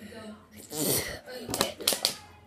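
A boy's short vocal sounds and sharp, breathy bursts, in two clusters about a second apart: his reaction to a mouthful of very sour candy.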